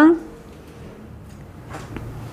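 A woman's voice trailing off, then a pause with only faint room noise and a soft brief sound near the end.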